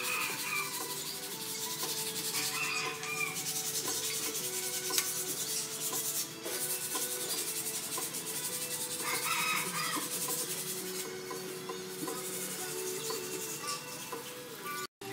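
Cloth rag rubbing and scrubbing over the main bearing shells and saddles of an engine block, wiping them clean. Soft background music with long held notes plays underneath.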